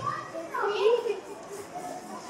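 Indistinct children's voices chattering, with no clear words.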